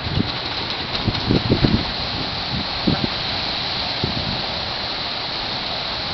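Steady outdoor hiss of wind on the microphone, broken by a few irregular low thumps of gusts or camera handling.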